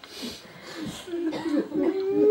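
A man coughs and clears his throat, two rough bursts in the first second, before his voice starts up again.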